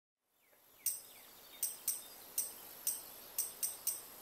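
Faint outdoor ambience fading in, with about eight short, high-pitched chirps at irregular intervals and a few fainter falling chirps in the first second or so.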